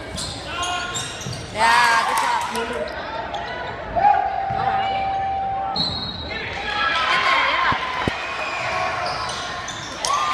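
Basketball game sounds on an indoor hardwood court: sneakers squeaking, the ball bouncing and spectators' voices in a large gym. Midway a single steady tone is held for about two seconds.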